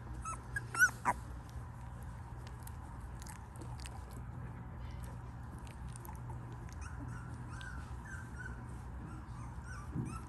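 Newborn pomsky puppy squeaking: a few short, high-pitched cries about a second in, then fainter little squeaks later on, with small clicks from the puppy mouthing a finger. A steady low hum runs underneath.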